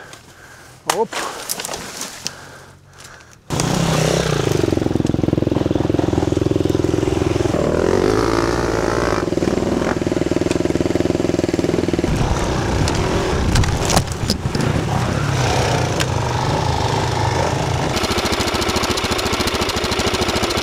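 Enduro motorcycle engine running steadily close to the microphone, cutting in abruptly about three and a half seconds in after a quieter stretch with a few knocks and a short shout.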